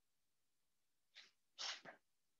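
Near silence, then two short bursts of a person's breath near the end, the second louder and longer, sneeze-like.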